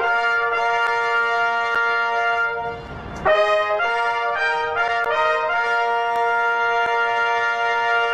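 A row of military band herald trumpets playing a fanfare in long held chords. There is a brief break about three seconds in, then a few quick changing notes, settling into a long sustained chord.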